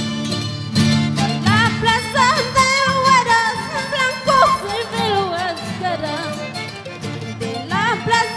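Instrumental break of a Peruvian huayno band: plucked strings and low bass notes, then a lead melody with wide vibrato and slides from about a second and a half in.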